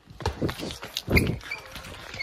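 Quick thumps and scuffs of someone running across a hard, smooth floor, with a few short high squeaks about a second and a half in.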